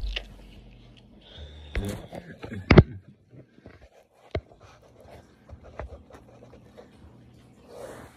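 Handling noise from a phone camera that has been knocked face down on carpet: rubbing against the microphone and sharp knocks about two, three and four and a half seconds in, as it is picked up and stood back up.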